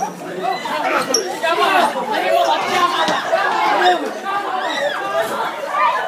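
Chatter of a crowd of students, many young voices talking and calling out over one another at once.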